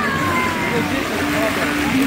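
Music from a singing fountain's loudspeakers, with held notes changing pitch and a voice-like line gliding slowly downward, over the hiss of the fountain's water jets.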